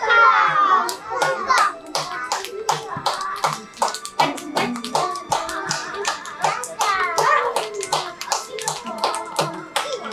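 Hands clapping in a steady rhythm along with a children's song, with young children's voices in among it.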